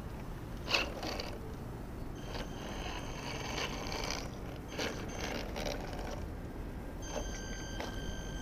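Electric motor and gearbox of a Tamiya CR-01 RC rock crawler whining in short stretches as it is driven, starting and stopping with the throttle. A sharp click about a second in, and a few lighter clicks among the whining.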